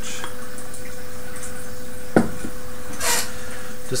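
Beer being poured from a bottle into a tulip glass, with one sharp knock about halfway through and a short hiss soon after.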